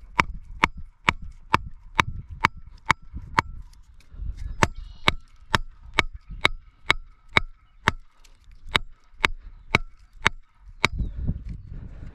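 A pecan wood log hammering the top of a galvanized steel angle-iron stake, driving it into the ground. The blows are sharp, evenly spaced knocks, about two a second for some ten seconds, and they stop shortly before the end.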